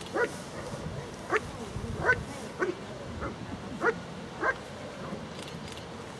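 German shepherd dog barking at a protection helper in a padded bite sleeve while guarding him: about seven short, sharp barks, spaced roughly half a second to a second apart.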